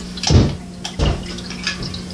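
Metal Meccano construction-set parts being handled and fitted together on a tabletop: two knocks less than a second apart, with light clicks between, over a steady low hum.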